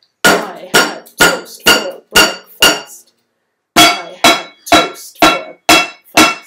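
Wooden spoons used as drumsticks beating a home-made kitchen drum kit of metal pans and a colander, each strike ringing briefly. Two phrases of six strikes, about two a second, in the rhythm of "I had toast for breakfast", with a short pause between them.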